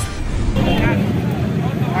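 A short news transition sting fades out about half a second in. Then come people's voices over a steady rumble of street noise, the live sound of bystander footage from an accident scene.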